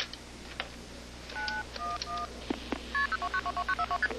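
Touch-tone telephone keypad being dialled: a few separate dual-tone beeps, then a quick run of short beeps near the end, with clicks from the keys and handset.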